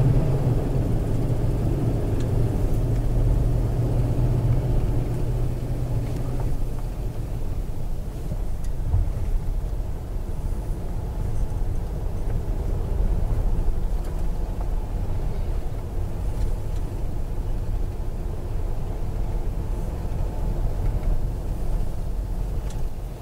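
A car driving slowly, heard from inside the cabin: a steady low rumble of engine and road noise. The engine hum is a little stronger in the first six seconds, then eases.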